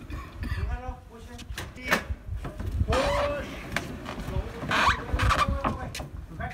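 Men's voices calling out indistinctly while a heavy plywood crate is pushed along on a wheeled dolly over plywood sheets. A low rumble runs underneath, and there is a sharp knock about two seconds in.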